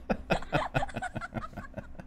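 A man laughing in a quick run of breathy bursts, about five a second, fading toward the end.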